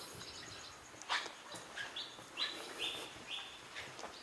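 Faint bird calls outdoors: four short, high chirps about half a second apart, starting about two seconds in. A soft knock comes about a second in.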